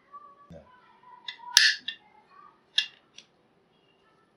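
Handling noise: a probe is stirred and scraped in a plastic tub of salted water, then set down, and wires are picked up. It gives a few sharp clicks and taps against the plastic, the loudest about a second and a half in.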